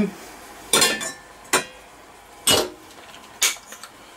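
Metal kitchenware clanking: a stainless steel potato ricer, loaded with a boiled potato, knocking against a stainless saucepan as it is handled and set in place. Four separate clanks, about a second apart, each with a short ring.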